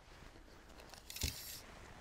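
Faint, brief rustle about a second in, with a soft low thump at its start, over a quiet background.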